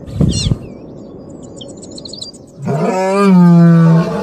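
A lion gives a loud, long roaring call held on one low pitch, starting about two-thirds of the way in. Before it come a short bird call at the start and faint bird chirping.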